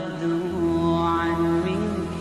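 Background music: a single long chanted vocal note held over a low drone.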